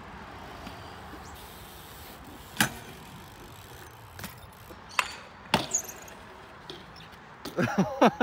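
BMX bike knocking against the concrete coping during a double-peg trick attempt: a few sharp clacks of metal pegs and tyres on concrete, loudest about two and a half seconds in and twice around five seconds in, over a steady background hum.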